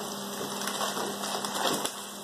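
Frozen mixed vegetables sizzling in hot oil in a pot, a steady hiss with a few faint clicks.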